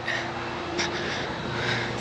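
Steady background noise with a faint, steady hum under it and no distinct event.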